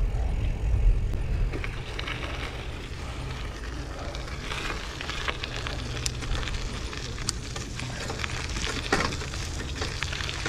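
Schwinn Copeland hybrid bike rolling along a trail on its gravel tires: a steady crackling hiss of tires over dirt and grit over a low rumble, with a few sharp clicks in the second half.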